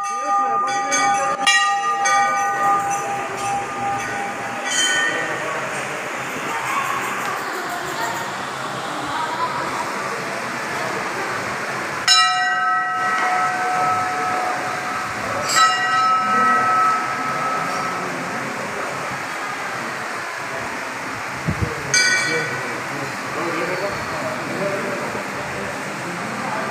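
Hindu temple bells struck by hand. A quick cluster of strikes comes in the first two seconds, then single strikes every few seconds, each ringing on and fading slowly. Under them runs the constant murmur of a crowd of devotees.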